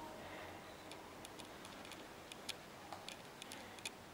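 Quiet room tone with about ten faint, sharp clicks spaced unevenly.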